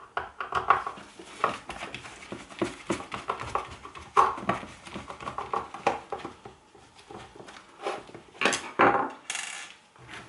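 Screwdriver undoing screws in an electric shower's plastic casing, with a busy run of small clicks, taps and scrapes from handling plastic parts and metal screws. A louder clatter and a short rub come near the end.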